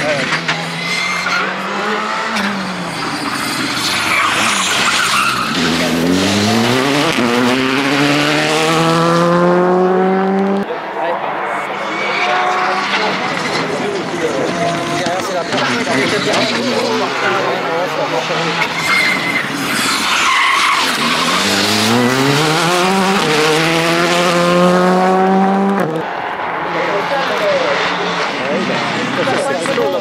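Rally cars passing at speed on a stage. Twice the engine note climbs steadily in pitch under hard acceleration, then cuts off suddenly about a third of the way in and again near the end.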